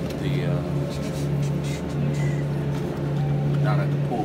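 Steady low hum of a supermarket refrigerated meat case, with the crinkle and light clicks of plastic-wrapped steak packages being picked up and handled.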